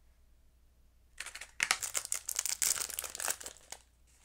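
Thin clear plastic snack packet crinkling as it is pulled from its cardboard box and handled: a dense run of crackles starting a little over a second in.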